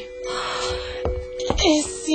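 Radio-drama music and sound effects: a held two-note drone runs under a brief rush of noise, two sharp clicks, then wailing, moaning glides that slide down and up in pitch.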